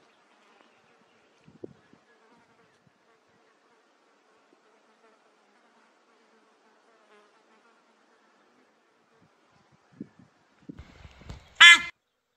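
A fly buzzing briefly and loudly close to the microphone near the end, after a few soft knocks. Before that there are only faint bush sounds.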